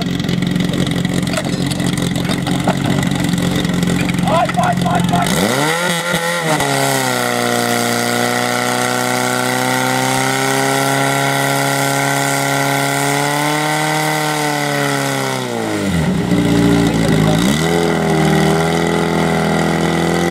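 Portable fire pump engine running steadily, then revving up hard about five seconds in and holding high revs as it drives water into the hoses. Its revs drop briefly near the end and climb again.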